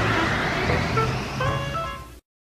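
A car pulling away in city traffic, its engine rumbling under music with short pitched notes, all fading out near the end.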